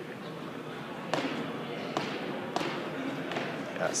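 Four dull thuds, unevenly spaced, each followed by the echo of a large indoor hall, over a steady room hum.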